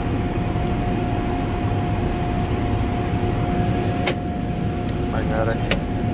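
Steady drone of workplace machinery with a constant whine running through it. Two sharp clicks of tools knocking in a metal toolbox drawer come about four and five and a half seconds in.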